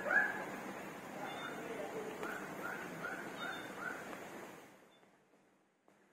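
A run of short, high, rising-and-falling yelping calls from an animal, like a small dog yipping, five in quick succession in the middle of the stretch. The sound cuts away to near silence about five seconds in.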